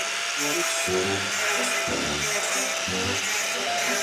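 Handheld angle grinder running with a steady whine as it cuts through welded wire mesh, with a continuous hiss from the grinding. Background music with a low bass line plays under it.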